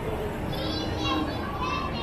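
Street ambience with a low steady rumble and background voices, cut through by two high-pitched shrieks, one about half a second in and another near the end.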